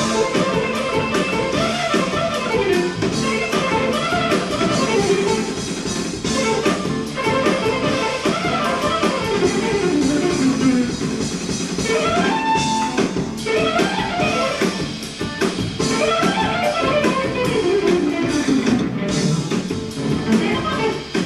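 Live jazz-fusion band playing a funk tune: a guitar lead of quick runs and sliding, bending phrases over a drum kit.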